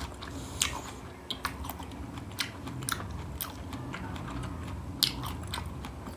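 Close-miked chewing of a mouthful of creamy fruit salad, with a few sharp, wet mouth clicks, the loudest about five seconds in.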